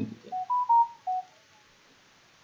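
A short electronic alert chime: four clean beeping notes over about a second, rising and then falling in pitch.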